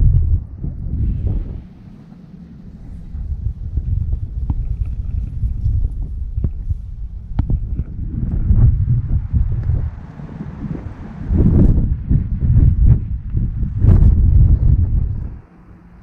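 Wind buffeting the camera microphone: a loud, uneven low rumble that swells and drops in gusts, with a few faint knocks.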